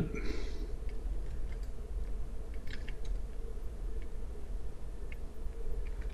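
Faint, scattered short clicks over a steady low hum.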